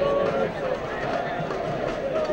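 A crowd of supporters talking and calling out, many voices overlapping.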